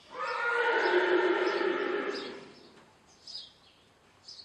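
A horse whinnying once, a loud call lasting about two seconds that falls in pitch as it goes.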